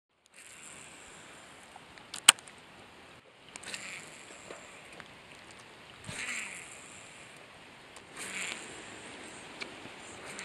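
Rain falling steadily on a pond surface, an even hiss that swells a few times. A single sharp click about two seconds in is the loudest sound.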